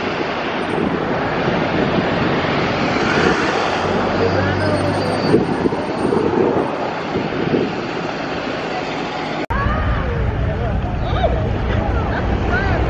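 Outdoor street ambience: passing traffic and distant voices, with a low engine hum about four seconds in. Near the end it cuts abruptly to a low wind rumble on the microphone, with voices in the distance.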